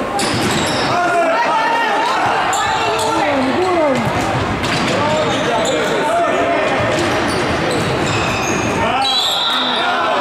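Indoor futsal play in a reverberant sports hall: overlapping shouts from players and onlookers, with the ball's kicks and bounces and short squeaks of shoes on the wooden floor.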